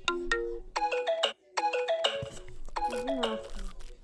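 A short electronic, ringtone-like melody of quick stepped notes, played in about four brief phrases with short gaps between them.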